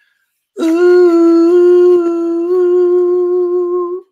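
A singing voice holding a sustained 'ooh' note for about three and a half seconds, starting about half a second in, with two slight steps in pitch. It is sung back as an echo of a short phrase just played on a baritone.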